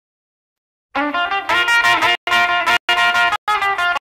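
Music, starting about a second in after silence, played in short phrases broken by brief gaps of silence.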